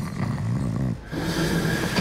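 A man snoring in his sleep: two long, low snores of about a second each.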